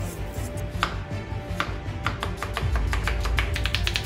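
Kitchen knife slicing a cucumber against a plastic cutting board. There are two single strokes in the first two seconds, then a quick, even run of cuts, several a second, from about two seconds in.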